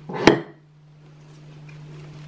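A glass vase knocking against a windowsill as it is moved: one short knock just after the start, then only a faint steady low hum.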